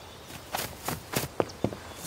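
About five short, light knocks at uneven spacing, starting about half a second in.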